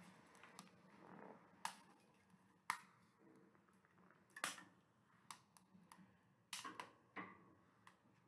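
Faint, irregular sharp clicks and knocks, about eight of them a second or so apart, as a small wood-burning stove with a lit fire is tended up close.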